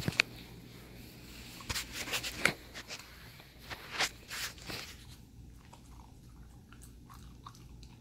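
Husky puppy crunching a hard dog treat: a run of sharp crunches through the first five seconds, then fainter chewing.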